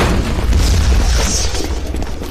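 Deep rumbling boom of an explosion, a film sound effect, with noisy debris and crackle above it, easing off near the end.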